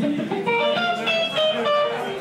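Guitar playing a quick run of single notes between songs.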